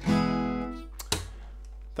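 Acoustic guitar's final strummed chord ringing out and fading, followed about a second in by two quick knocks close together.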